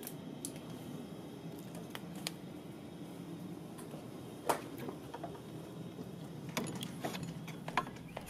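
Laboratory room tone: a steady low hum under scattered light clicks and taps of bench work, with one sharper click about four and a half seconds in and a cluster of clicks near the end.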